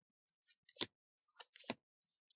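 Round cardboard fortune cards being handled and laid one by one onto a pile: about five light, short clicks of card against card.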